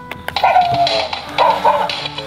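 Poppy the Booty Shaking Pug battery toy dog starting its song after its side button is pressed: a few short clicks, then an electronic tune with a high sung voice over a steady backing.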